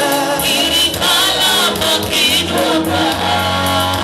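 Live gospel worship song: a man singing lead into a microphone with other voices joining in, over a steady low instrumental backing.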